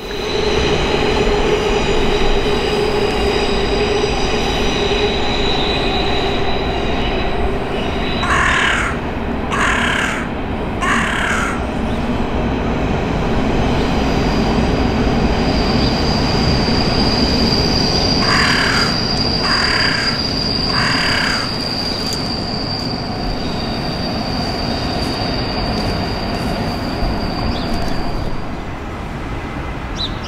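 Rail wheels squealing on the track as a train runs: a steady rumble with held tones and a long high squeal through the middle. Over it a crow caws in two runs of three, about eight and eighteen seconds in.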